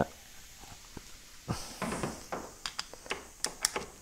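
Metal parts of a removed switchable water pump being handled by hand, with light clicks and taps. A quick string of sharp clicks comes in the second half.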